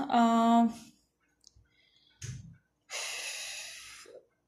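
A woman's drawn-out word trails off, then after a pause a short breath sound and a long exhale of about a second that slowly fades.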